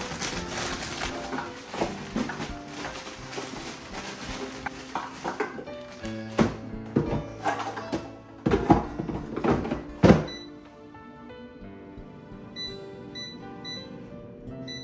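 Background music with a steady melody, over the rustle of a plastic bag and a series of knocks as frozen popcorn shrimp are tipped into an air fryer; the handling noise stops about ten seconds in, leaving only the music.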